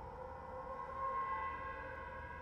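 Soft, sustained dramatic TV underscore: a held chord of steady tones, with no melody, that swells slightly about a second in.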